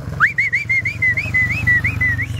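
A person whistling one high warbling note that wavers up and down about four times a second, over the low, steady running of a motorcycle engine.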